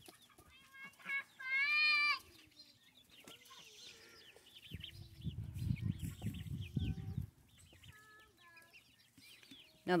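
Chickens clucking and calling, with one longer, louder squawk about a second and a half in and a few short calls near the end. A low rustling rumble runs through the middle for about two seconds.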